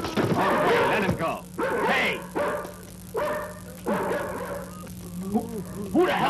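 Men's shouted cries and grunts during a hand-to-hand fight, a string of short yells one after another, with a sharp hit right at the start.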